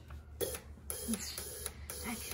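Four decapped LS fuel injectors triggered together from a battery, spraying gasoline into glass jars: a short hiss about half a second in, then a longer spray lasting about a second, over the steady hum of the electric fuel pump holding pressure.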